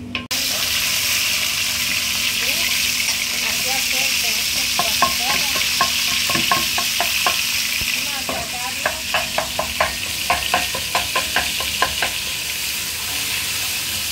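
Minced pork frying in olive oil with chopped garlic in a pot, sizzling loudly; the sizzle starts suddenly just after the start. From about halfway on, a wooden spoon knocks and scrapes against the pot in quick strokes, two or three a second, as the meat is broken up and stirred.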